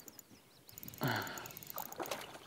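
A hooked crappie splashing at the surface about a second in, a short rush of water that then trails off.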